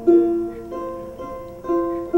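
Strings of a fiddle plucked one at a time during tuning: three separate notes, each ringing and fading, the second one higher.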